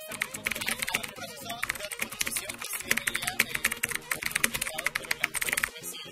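Rapid computer-keyboard typing sound effect, a dense run of clicks that starts suddenly and cuts off suddenly near the end, laid over faint background music.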